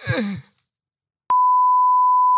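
A short falling vocal sound, then silence, then a steady high-pitched test-tone beep that starts abruptly a little past halfway and holds. The beep is the reference tone that plays with colour-bar test patterns.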